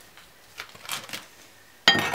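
A table knife clinks sharply against a ceramic plate near the end, ringing briefly. Before that there are only a few faint taps.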